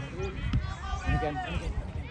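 Voices calling out across a grass soccer pitch during a children's match, with a single thud about half a second in.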